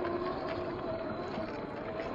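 RC rock crawler with a 540 brushed motor wading through a shallow stream: water splashing and swirling around the tyres, with a steady motor whine underneath.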